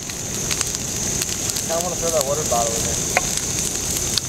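A burning couch bonfire: a steady rush of flames with scattered sharp crackling pops. A faint voice is heard briefly about halfway through.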